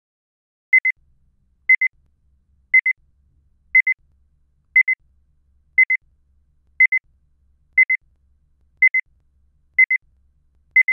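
Electronic timer beeping: a high-pitched double beep repeated about once a second, ten times, counting off the pause for answering a question.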